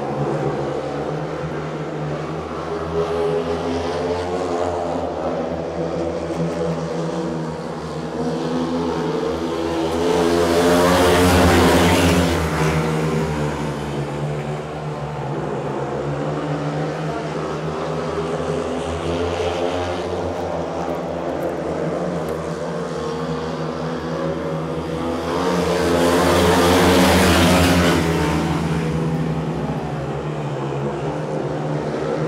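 Speedway motorcycles, 500 cc single-cylinder methanol-fuelled engines, racing together round the track in a steady multi-engine drone. The sound swells loud twice, about a third of the way in and again near the end, as the pack passes close by.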